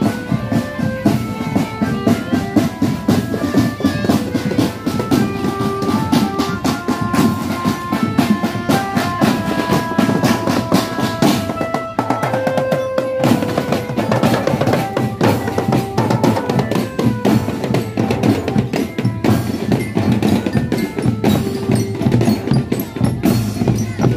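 Marching drum band playing: snare and bass drums beating a steady rhythm under a melody, with a brief change in the music about halfway through.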